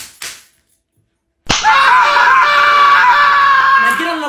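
A belt strikes once with a sharp smack about a second and a half in, and a person at once lets out a long, loud scream held at one pitch.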